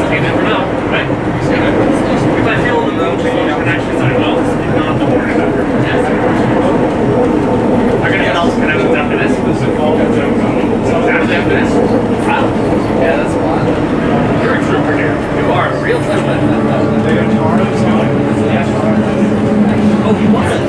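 Cabin of a 1954 Canadian Car-Brill T48A electric trolley bus under way: steady running noise of the moving coach with a low hum, heard through open windows, under passengers' chatter.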